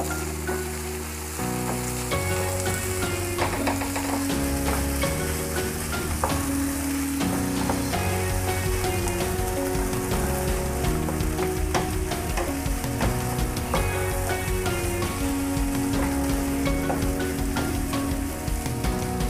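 Paneer bhurji sizzling in oil in a nonstick frying pan while a wooden spatula stirs and scrapes it, with small scraping clicks throughout. Soft background music with held notes plays underneath.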